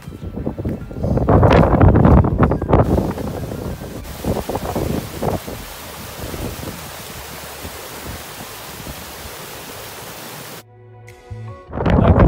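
Strong gusts of wind buffeting the microphone for the first few seconds, then the steady rush of a mountain stream cascading over granite boulders. Near the end the water cuts out to a short, quieter stretch with a few steady tones.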